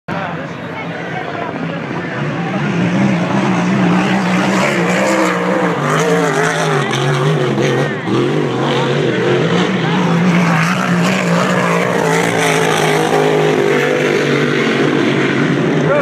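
Racing powerboat engines running at speed across the water: a loud, steady drone with a slightly wavering pitch, building over the first few seconds and then holding.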